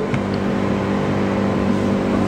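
A steady mechanical hum of constant pitch with a low rumble beneath it.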